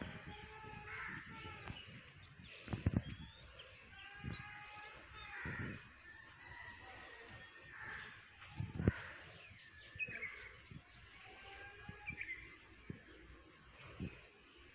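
Birds calling and chirping outdoors, mixed with a voice at times, and a few sharp knocks about three and nine seconds in.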